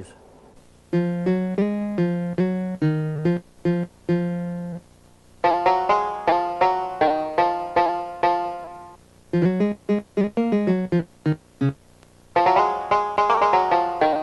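Sampled acoustic guitar and banjo notes played from the Amiga 2000 computer's keyboard. They come in short runs of single plucked notes, each ringing and fading, with brief pauses between the runs.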